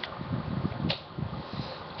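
Soft handling rustles and low bumps over a steady room hum, with two small sharp clicks, one at the start and one just under a second in.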